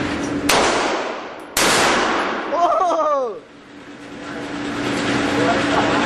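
Two gunshots about a second apart from a shoulder-fired gun, each with a long echoing tail from the indoor range, followed by a brief falling-pitch whine.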